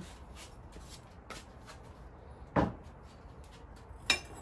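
A glazed ceramic bowl being handled and set down on a kiln shelf among other pots, with a single hard clunk about two and a half seconds in and faint rubbing and clicking around it.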